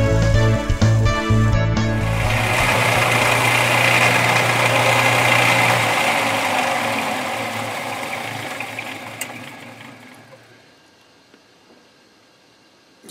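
Background music for the first two seconds, then a metal lathe running with its chuck spinning; about six seconds in its hum stops and the machine winds down to a stop, fading steadily to near quiet.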